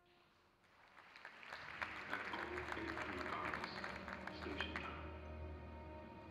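Audience applauding in a large concert hall, the clapping swelling from about a second in and easing off toward the end.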